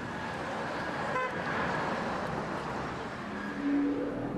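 City street noise with traffic going by, and a short car horn toot about a second in.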